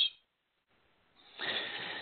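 A short pause, then a man's audible in-breath into the microphone, a soft rush lasting under a second, taken in before he speaks again.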